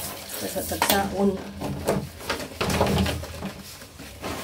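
Wet plastic refrigerator drawers and shelves being scrubbed and handled by hand, with scrubbing noise and several sharp clacks as the plastic parts knock together.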